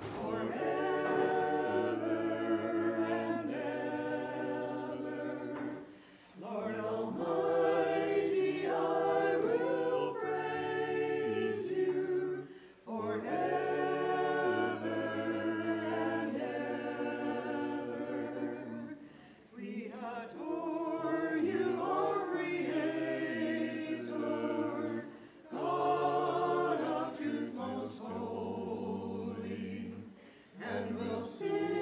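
Unaccompanied choir singing a hymn, in held phrases of about six seconds separated by brief pauses for breath.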